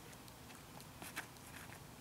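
Near silence: quiet background with a few faint, brief clicks about a second in.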